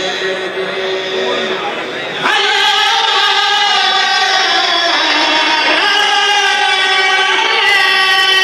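A Mouride kourel: a group of men chanting religious poems together, unaccompanied. About two seconds in a new phrase starts louder, with long held notes that shift pitch now and then.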